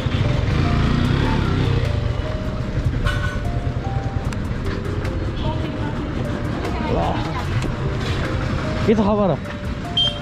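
Motorcycle engine idling with a steady low rumble, under background music with short melodic notes; a voice comes in about nine seconds in.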